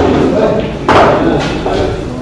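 A pool ball thudding into a pocket of the sinuca table about a second in, with faint voices around it.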